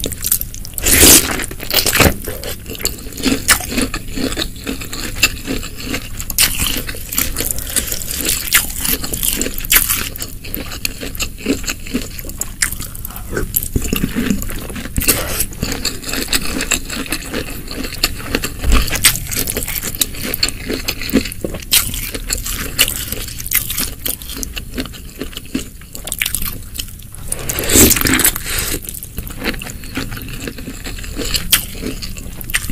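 Close-miked eating sounds: crunchy bites and wet chewing of spicy snow fungus in thick sauce, a dense run of sharp crackles. A wooden spoon scrapes the glass dish between mouthfuls. The loudest bites come near the start and near the end.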